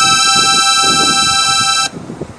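Live electronic music: a high, steady held synthesizer chord that cuts off suddenly near the end, closing the track.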